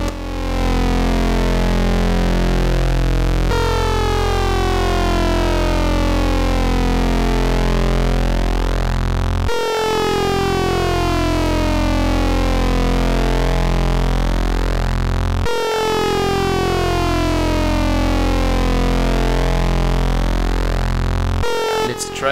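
Eurorack modular synthesizer patch built around a Rossum Trident oscillator, playing a steady, buzzy, low drone pitched around F1. Its timbre sweeps through a repeating cycle that restarts abruptly about every six seconds as the main pulses are modulated.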